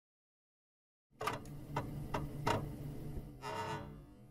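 Short musical intro sting. After about a second of silence come four sharp ticking hits, roughly a third of a second apart, over a low held note, ending in a brighter swell near the end.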